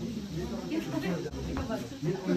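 Indistinct chatter of several people talking at once in a small room, with a steady hiss underneath.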